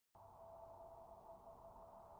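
Near silence: only a faint, steady tone and low hum.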